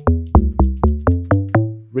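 The amapiano log drum preset of FL Studio's Fruity DX10 synth, played back as a run of short, deep, pitched drum notes at about four a second. Each note hits sharply and dies away quickly, and the notes step between different pitches.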